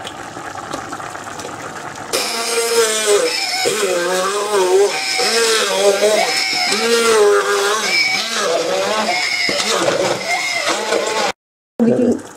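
A singing voice with music, cutting in abruptly about two seconds in and stopping in a sudden brief dropout near the end; before it, a quieter steady noise.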